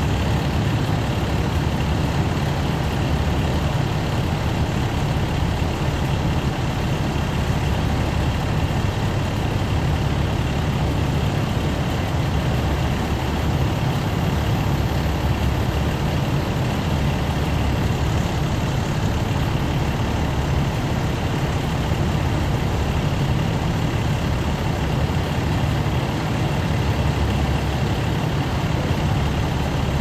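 Fire apparatus diesel engine running steadily, a continuous low rumble with no breaks.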